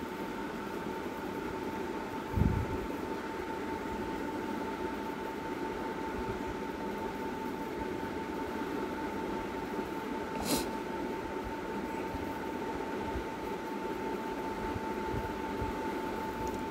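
Steady background hiss of the recording with a constant high-pitched hum running through it, broken by a low thump about two and a half seconds in and a short click about ten and a half seconds in.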